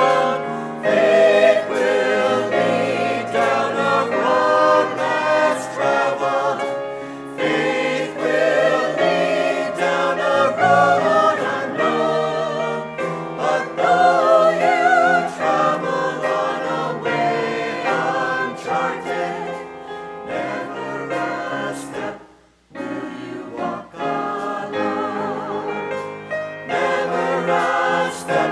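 Small mixed choir of men and women singing a church anthem with upright piano accompaniment, with a brief pause about three quarters of the way through.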